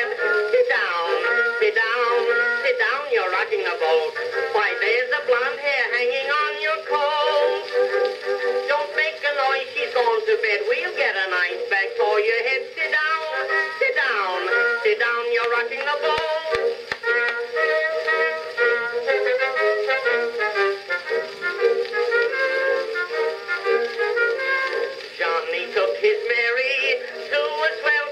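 Edison Blue Amberol cylinder record playing on an Edison cylinder phonograph: the band's instrumental passage of the song. It has the narrow, thin sound of an early acoustic recording, with no deep bass and little top.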